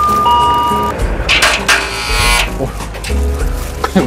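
Intercom doorbell at a house gate: a short electronic chime for about a second. About a second and a half in comes a harsh buzz of about a second, the gate's electric lock being released from inside. Background music plays underneath.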